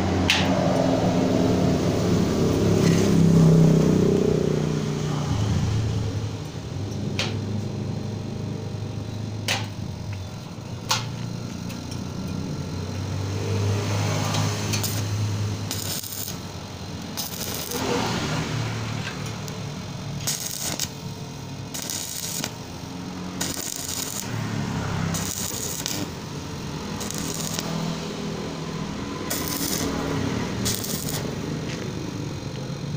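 Stick (arc) welder laying short tack welds on a steel sliding-gate latch: bursts of crackling arc start about halfway through and repeat every second or two. Before that, a low rumble and a few sharp clicks.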